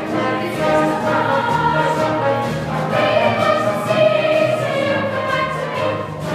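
A chorus of voices singing a show tune together over an instrumental accompaniment, with long held notes in the middle.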